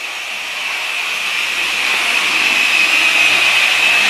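Electric polishing machine running steadily at low speed with a pad, spreading a silica-based ceramic coating on car paint; a continuous whirring whine that grows gradually louder.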